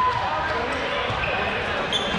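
Rubber dodgeballs bouncing on a hardwood gym floor against a steady hubbub of voices in the hall, with a brief sharp click near the end.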